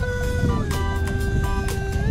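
Background pop music: a long held note that slides down in pitch about half a second in, then holds.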